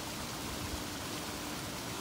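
Steady outdoor background hiss with a faint low hum underneath; no calls or distinct events.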